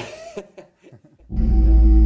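A man's brief chuckle, then a short hush, then a loud, deep, steady drone with a few held tones starting just over a second in.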